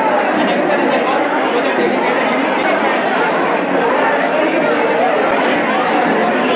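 Crowd chatter: many people talking at once in an indistinct, steady hubbub of overlapping voices.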